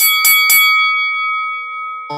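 Three quick bell strikes about a quarter second apart, then a ringing tone that fades slowly: an interval-timer bell marking the switch from work to rest between exercises.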